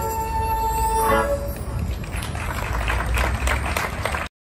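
A small acoustic street band of violin, a wind instrument and acoustic guitar plays the closing notes of a tune, holding a final note that stops about a second in. Scattered clattering noise follows.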